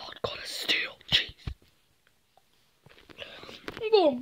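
A person whispering breathily, with short soft knocks from handling the camera and plush toys, and a brief voiced sound gliding in pitch near the end.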